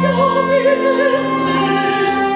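A woman singing in operatic style over a live theatre orchestra in a zarzuela number. For the first second she holds a note with wide vibrato, then moves to steadier held notes.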